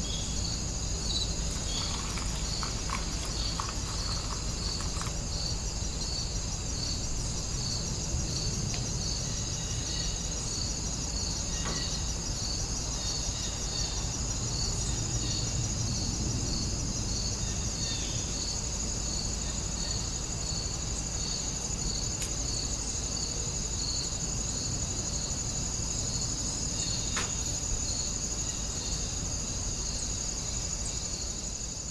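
Insects chirping in a steady chorus: a continuous high trill with a regular chirp repeating about one and a half times a second, over a low hum.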